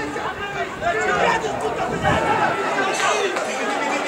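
Several people talking and calling out, their voices overlapping.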